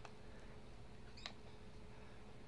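Two faint computer mouse clicks about a second and a quarter apart, over a low steady hum.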